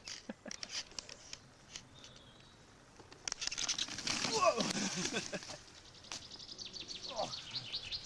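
Skateboard wheels rolling and grinding over a rough dirt and gravel track. The rough noise starts about three seconds in and lasts a few seconds, after scattered clicks and a quieter stretch. A person's short shout or laugh comes over it in the middle and again near the end.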